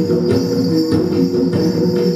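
Traditional Sikka gong-and-drum music for the Hegong dance (gong waning): several tuned gongs ring at set pitches over a steady drum beat of about three strokes a second, with a high, constant jingling of bells on top.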